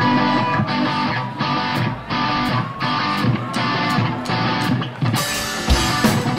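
Rock band playing live: electric guitars and drum kit come in loud right at the start, driving on with a steady beat, and a bright crash near the end gives way to heavy bass-drum hits.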